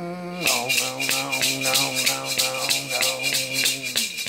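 A man's voice holding one long, low chanted note, over a hand shaker shaken in a steady rhythm of about five strokes a second.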